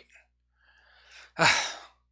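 A person sighing into a microphone: a faint breath, then a loud breathy exhale about a second and a half in.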